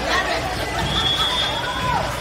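Voices chattering and calling out in a gymnasium, with a single high steady whistle blast of about a second in the middle, typical of a volleyball referee's whistle. A high voice rises and falls near the end.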